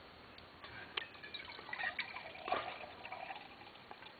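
Milk being poured into a milk jug, faint trickling with a few light knocks.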